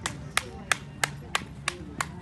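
One person clapping in a steady rhythm, sharp claps about three a second.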